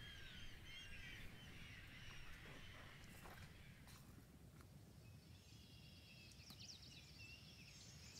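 Faint bird chirps over near silence. A page of the book is turned about three to four seconds in.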